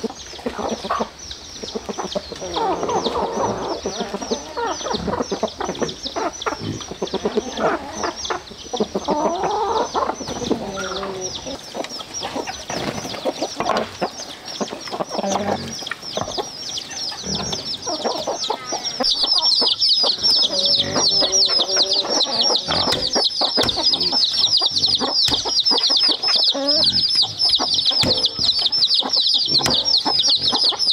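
Free-range chickens clucking around a yard. Short knocks and scrapes come from fish being cleaned and cut on a wooden board. A dense, rapid high chirping runs in the background and grows much louder about two-thirds of the way through.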